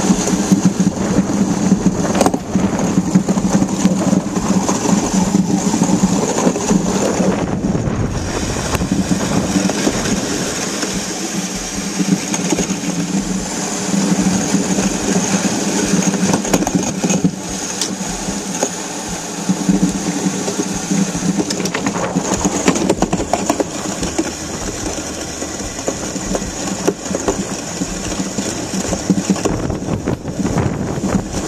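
Steel runners of a DN ice yacht rumbling and hissing over hard, smooth lake ice as the boat sails at speed, heard from on board. The sound is loud and steady, swelling and easing a little.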